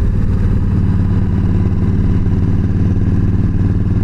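Yamaha V Star 1300's V-twin engine running steadily at cruising speed on the open road, an even, unchanging drone.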